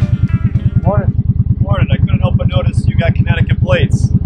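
Motorcycle engine idling, a steady rapid low pulse throughout.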